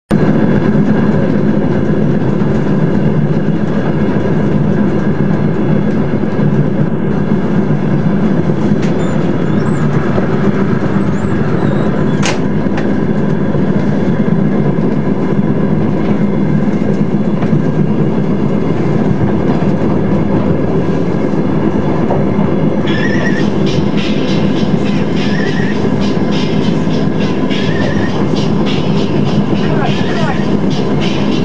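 Steady running noise of a moving vehicle, continuous throughout, with a denser rattling texture coming in about two-thirds of the way through.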